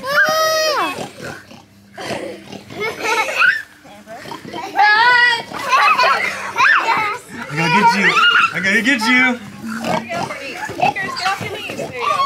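Young children squealing, shrieking and laughing as they play a chase game, with a long high squeal right at the start and another about five seconds in. A man's lower voice joins in around eight to nine seconds.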